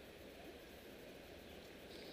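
Near silence: faint room tone of a large sports hall.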